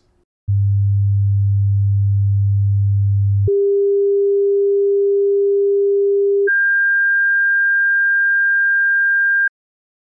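Three pure sine-wave test tones in sequence, each about three seconds long and at the same level: 100 Hz, then 400 Hz, then 1600 Hz, each step two octaves higher. The middle tone is the geometric mean of the outer two, played to show that it sounds halfway between them in pitch.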